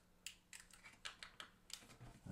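Faint, irregular crackling ticks of a clear plastic transfer film being peeled back slowly off a vinyl sticker.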